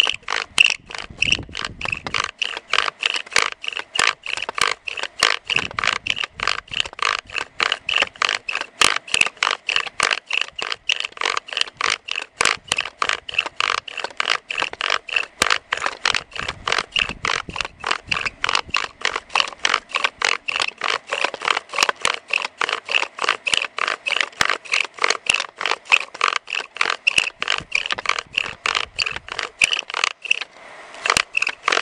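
Bow drill for friction fire: a willow spindle, turned by a pine bow with a nylon cord, grinding in a willow hearth board. It gives a steady, rhythmic scraping with each stroke of the bow, about three strokes a second, while the spindle drills down to build up an ember.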